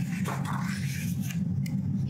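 A paper workbook page being turned by hand: a soft rustling swish lasting a little over a second.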